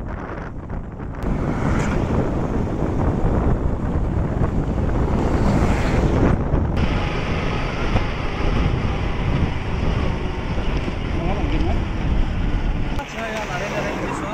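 Wind buffeting the microphone while riding a motorbike at speed, with engine and road noise underneath as a dense, steady rush. It drops off about a second before the end.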